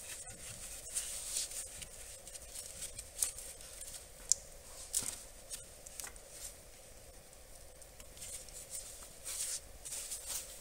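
Gloved hands working a small plastic wire clip and wiring loose under the hood: scattered faint clicks and rustles over a low steady hum.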